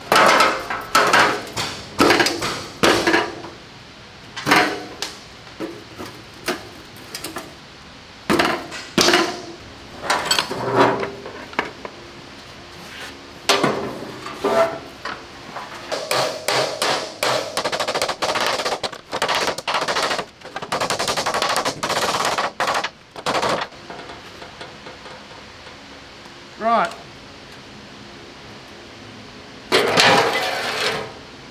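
Hammer blows on a Panhard EBR 90's sheet-metal mudguard, panel beating it back into shape on a steel workbench. The blows come in irregular bursts, with a fast run of strikes about halfway through.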